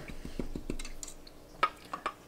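Paintbrush tapping and scraping against a plastic watercolour paint tray: a few light clicks, then two sharper clicks near the end.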